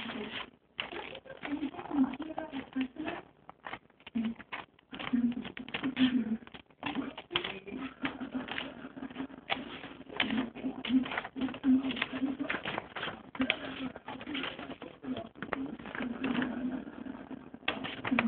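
Scissors snipping through paper, many quick irregular snips, as an eye hole is cut out of a paper mask.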